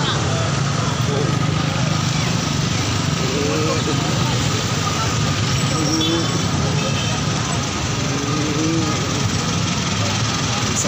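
Steady din of a large street crowd talking, mixed with motorcycle and car engines moving slowly through it, with scattered voices standing out briefly.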